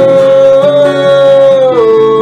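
A man singing one long held note over acoustic guitar, the note stepping down in pitch near the end.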